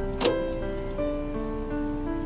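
Background music with held, steady notes.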